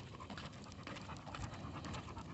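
A blue nose pit bull panting faintly as it walks on a leash, with light ticks of its steps.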